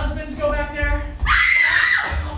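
A person's drawn-out voice, then a loud, high-pitched scream starting a little over a second in.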